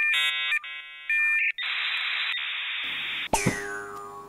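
Comic "loading" sound effect added in editing, like an old computer dial-up: a run of electronic beeps and tones, then about a second and a half of steady static hiss. Near the end comes a click and a held electronic tone with a high whistle that swoops down and back up.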